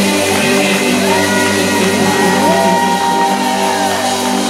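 Live band music with a man and a woman singing a duet over it, a long note held from about a second in to near the end.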